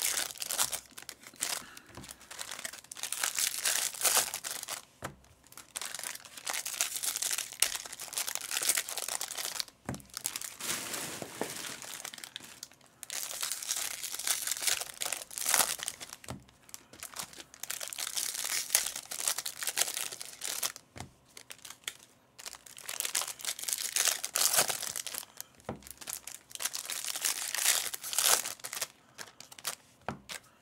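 Foil wrappers of Topps baseball card packs crinkling and tearing as they are ripped open by hand, in irregular bursts with short pauses between packs.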